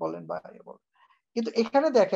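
Speech over an online video call: a voice speaking briefly, a pause of about half a second, then speech resuming louder near the end.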